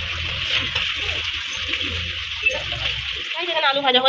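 Potato chunks frying in hot oil in a steel kadai: a steady sizzle, with a low hum underneath that stops about three seconds in.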